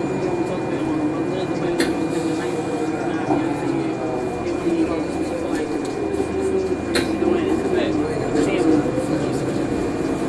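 Cabin sound of a 2014 NovaBus LFS articulated hybrid bus under way: the Cummins ISL9 diesel and Allison EP 50 hybrid drive hum steadily, the pitch wavering and climbing near the end, with a couple of sharp rattles and passenger chatter in the background.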